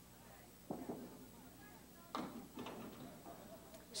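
A candlepin bowling ball striking the pins gives two sharp wooden knocks, about a second in and about two seconds in. The hit is light and takes down only a pin or so.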